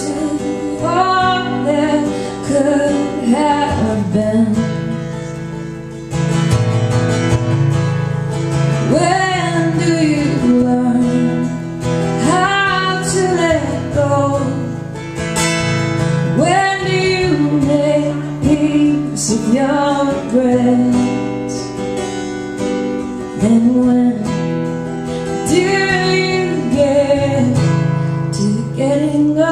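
A woman singing while strumming an acoustic guitar, her voice carried through a stage microphone.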